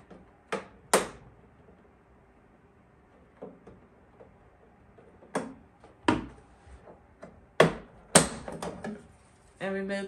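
Plastic back cover of a Vitamix FoodCycler FC-50 food recycler being unclipped and pulled off: a handful of sharp plastic clicks and knocks, unevenly spaced, with a quicker run of smaller taps about eight seconds in.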